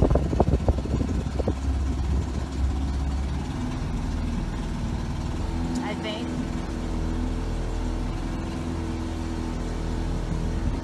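Motorboat engine running at a steady pitch as the boat moves along the river, with a few knocks in the first second and a half.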